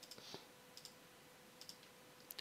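Near silence with a few faint, short clicks of a computer mouse as drawing tools are picked and used, over a faint steady hum.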